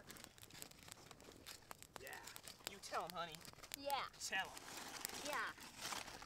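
Wood campfire crackling quietly with scattered sharp pops, with a few faint voices talking in the background.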